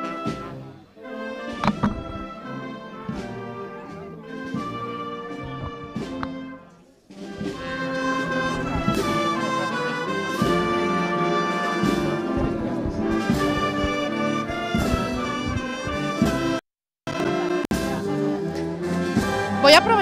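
A marching wind band of brass and saxophones playing a tune, softer at first and fuller and louder from about seven seconds in. The sound cuts out completely for a moment a few seconds before the end.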